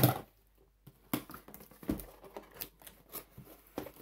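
Cardboard shipping box flaps being pulled open and the crumpled kraft paper packing inside rustling: a sharp crackle right at the start, then a run of separate, irregular crinkles and scrapes.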